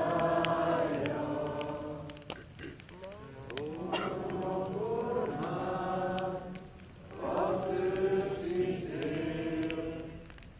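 A group of young men and women singing together in a slow song, held in long phrases with short breaks about two and seven seconds in.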